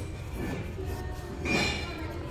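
Shop ambience: a steady low hum with faint background music, and a short squealing scrape about one and a half seconds in.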